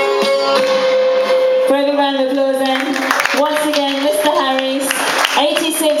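Traditional folk music with violin playing. From about two seconds in, a man talks over it through a microphone and PA.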